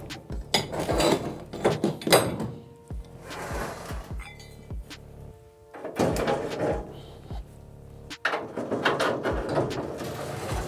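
An aluminium slide-out loading deck in a van's cargo bay being pulled out, sliding in several rumbling bursts with metal clunks and clicks as its support leg is swung down, over background music with a steady beat.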